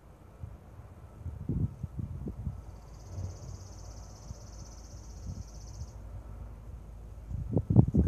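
A small animal's high, rapid trill, held steady for about three seconds from about three seconds in. Under it are low rumbling bursts on the microphone, the loudest just before the end.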